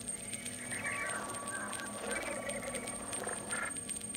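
Experimental turntable music: a steady run of record clicks and crackle over a thin, steady high tone, with warbling, chirping sounds from about half a second in until near the end.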